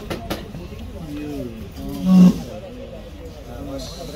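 Men's voices talking in the background, with one loud, short held vocal call about two seconds in. Two sharp knocks near the start.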